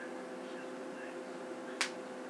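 A single sharp click near the end as a hair pin is worked into twisted hair, over a steady low hum.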